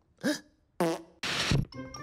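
A cartoon banana character makes two short vocal effort sounds with falling pitch while attempting a backflip. About 1.3 s in comes a harsh, noisy blast lasting under half a second, the loudest sound here. A music cue starts just at the end.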